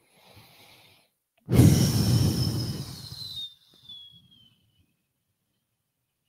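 A long, breathy exhale into a close microphone, starting about a second and a half in and fading away over about two seconds, with a thin whistle falling in pitch through it.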